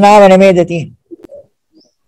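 A man's voice holding one drawn-out, slightly wavering syllable for about a second, then stopping.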